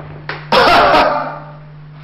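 A man coughing: a couple of short coughs, then one loud, harsh cough about half a second in that fades away.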